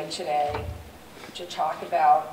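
A woman speaking through a lectern microphone in a large hall, with a short low thump about half a second in.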